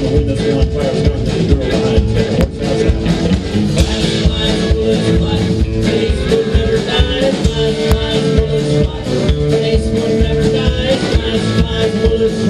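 A live alt-country rock band playing loudly: electric guitar, pedal steel guitar, upright bass and drums, with a steady drum beat and long held notes under it.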